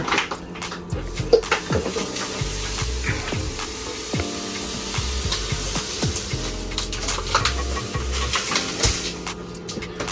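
Sugar being poured into a plastic jug at a kitchen sink and mixed with warm water to dissolve it: a steady hiss with scattered clinks and scrapes.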